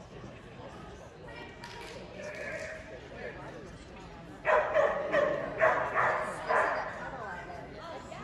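A dog barking about five times in quick succession, starting about halfway through, over low background chatter.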